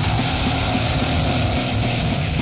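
Old-school death metal recording: a dense, heavily distorted guitar riff over fast, rapid-fire drumming.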